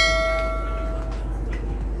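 Notification-bell 'ding' sound effect: one bright chime with ringing overtones, fading away over about a second.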